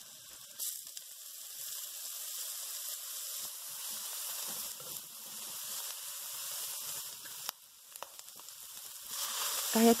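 Ginger, garlic slices and shredded dried scallop sizzling in hot oil in a wok, a steady high hiss. It dips briefly past the middle, then swells louder near the end.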